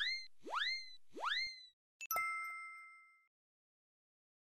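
Three quick rising pop sound effects, about half a second apart, then a single bright ding that rings for about a second as it fades away.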